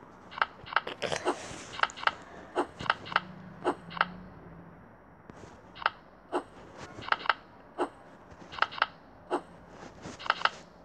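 Short, sharp clicks at irregular spacing, often in quick pairs, from tapping cards over in a memory-matching game on a tablet.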